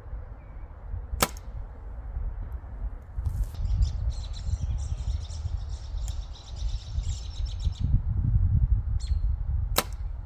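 A compound bow shot just before the end: one sharp snap as the string is released from full draw. Before it there is a single sharp click about a second in, a bird trilling in the middle, and wind rumbling on the microphone.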